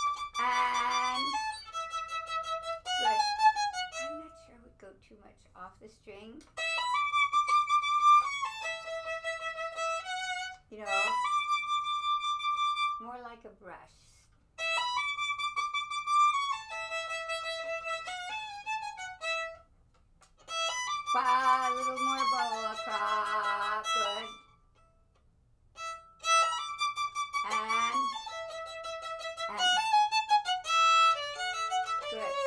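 A violin playing the same short passage of sustained, bowed notes several times over, with brief pauses between the repetitions.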